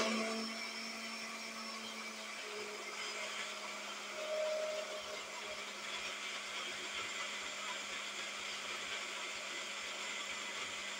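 Countertop electric blender's small grinder jar running steadily, grinding peanuts into peanut butter: an even motor whir with a low hum.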